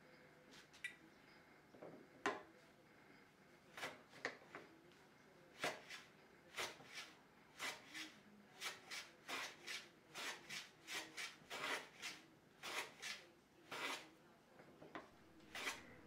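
Hand plane shooting a 45-degree mitred edge on a shooting board: a run of short, faint strokes as the blade takes shavings, a few at first, then about two to three a second. Each pass trims the bevel clean of table-saw burn and marks to a true 45 degrees.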